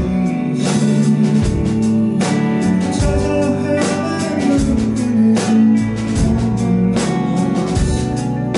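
A live band playing a song: electric guitar over bass and a drum kit, with steady drum hits throughout.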